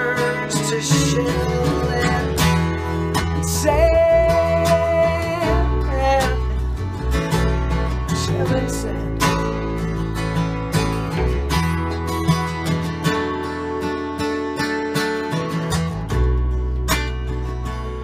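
Gibson J-35 acoustic guitar strummed alongside a bass guitar changing notes, an instrumental break in a stripped-down folk song.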